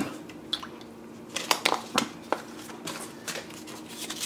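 Light handling noises on a workbench: a handful of short rustles and clicks as the knives and a piece of sandpaper are picked up, over a faint steady hum.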